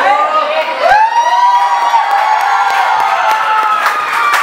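Audience cheering and whooping, with long drawn-out shouts that rise and then hold their pitch, overlapping one another.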